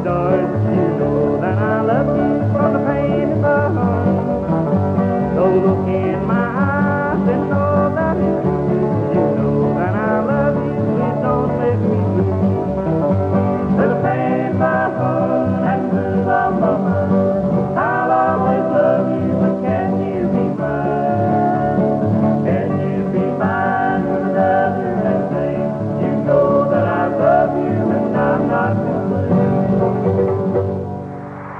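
Bluegrass music: an acoustic string band with guitar and other plucked strings, with singing over it.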